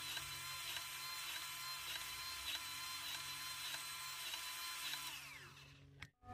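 Milwaukee cordless power grease gun running steadily with a faint regular pulse about twice a second as it pumps grease into a grease fitting on a compact tractor's loader pivot. About five seconds in it is released and winds down with falling pitch.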